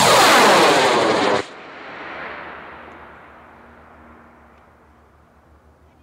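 A high-power model rocket's J-250 solid motor at liftoff: a loud, harsh roar that cuts off suddenly about a second and a half in as the motor burns out. Then a rumbling echo off the surrounding trees fades away over the next few seconds.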